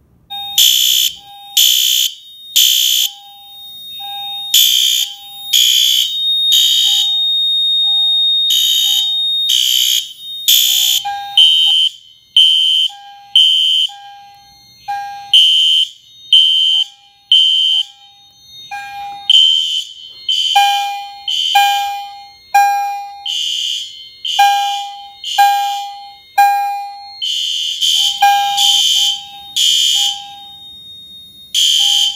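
Fire alarm horn-strobes sounding after a manual pull station is pulled, blasting in a repeating on-off pattern. A harsh high horn and a lower beep pulse out of step with each other, and the blasts grow denser and louder about two-thirds of the way through.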